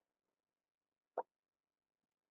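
Near silence, broken once about a second in by a single short click.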